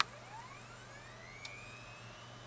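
A 3.5-inch IDE hard drive powering up in a USB dock: a click as the power comes on, then the spindle motor spinning up as a faint whine rising steadily in pitch. The drive spins up even though it was feared damaged.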